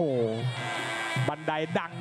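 Muay Thai ring music: a pi java (Thai oboe) holds one steady note for under a second, between a commentator's excited drawn-out exclamation and his next words.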